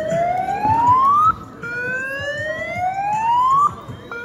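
A siren sounding two rising whoops, each climbing steadily in pitch for one to two seconds and cutting off sharply.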